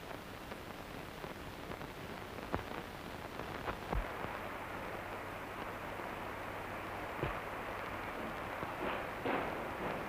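Steady hiss of an early sound-film soundtrack, with a handful of scattered sharp knocks and thumps from a scuffle, the strongest about four seconds in.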